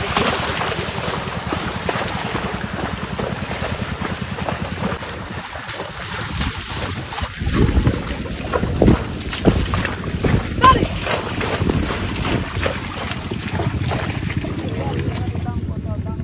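Water and mud splashing and sloshing as a water buffalo and its wooden-wheeled cart wade through a flooded muddy track, with wind buffeting the microphone. The splashing comes in heavier, irregular surges roughly halfway through.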